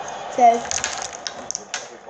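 A string of quick, light plastic clicks and taps from lip balm tubes and caps being handled.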